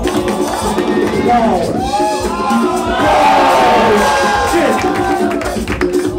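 Break-beat music playing steadily. From about a second and a half in, the crowd whoops and cheers over it, loudest around three seconds in, and the cheering dies down before the end.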